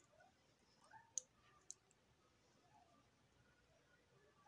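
Near silence broken by two sharp clicks about half a second apart: knitting needle tips tapping together as stitches are worked.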